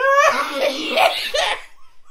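Loud, hearty human laughter: a burst that lasts about a second and a half, then dies away.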